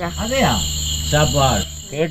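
Crickets chirping in a steady high trill throughout, under a man's spoken dialogue in Malayalam.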